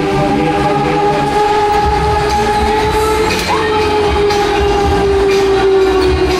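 Loud music from a Break Dance fairground ride's sound system: a long held synth tone that sags slightly in pitch near the end, over a low pulsing bass that comes in about two seconds in, with a short rising glide about halfway through.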